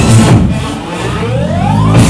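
Psychedelic trance played loud over a club sound system, breaking down about half a second in: the highs fall away while the bass line carries on. A single synth tone sweeps upward through the second half.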